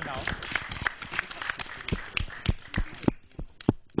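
An audience clapping: a scatter of irregular hand claps that thins out and stops about three seconds in.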